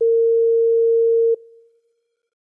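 A single steady electronic beep, one unchanging medium-pitched tone lasting a little over a second, that ends with a click and a brief faint tail. It is the beep that stands in for the last word or words of the recording in a select-missing-word listening task.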